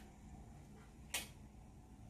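Quiet room tone with a single short, sharp tick a little over a second in.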